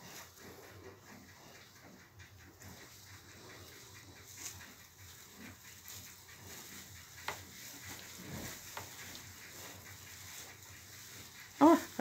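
Faint rustling and a few soft small noises from newborn Vietnamese pot-bellied piglets moving about in straw bedding beside the sow. A louder voice cuts in just before the end.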